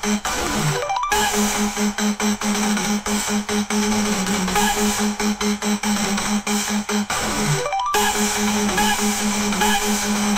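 AI-generated instrumental electronic music with a held synth bass note under a steady beat. Twice, about a second in and again near eight seconds, a rising pitch sweep runs into a brief cut-out before the beat comes back.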